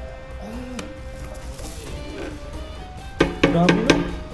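Metal serving platter clattering as it is upended and knocked onto a table to tip out chicken and rice: several sharp clanks close together near the end, with a shout over them.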